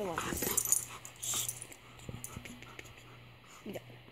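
Dog whining briefly near the start, followed by small scattered sounds of the dog moving.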